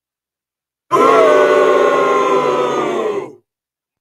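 A man's long, drawn-out groan, starting about a second in and held for about two and a half seconds on a steady, slightly falling pitch with breathy hiss over it.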